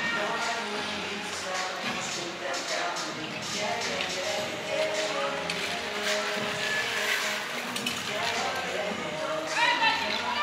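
Indistinct voices mixed with background music in an indoor ice rink hall.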